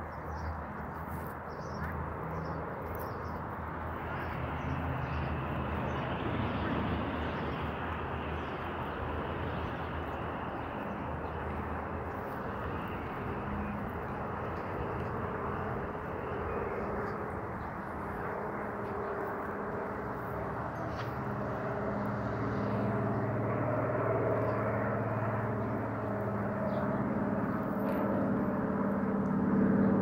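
Steady outdoor traffic hum in the background, joined in the second half by an engine drone of steady pitch that grows louder: a seaplane's propeller engine approaching overhead.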